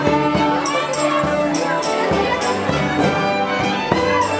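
Traditional dance music for a padespan, pitched instruments over a steady beat of sharp high strikes, with crowd voices underneath.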